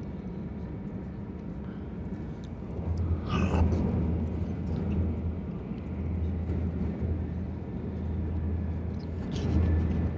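Steady low rumble of a Shinkansen bullet train, heard from inside the passenger cabin. A short voice-like sound comes about three and a half seconds in.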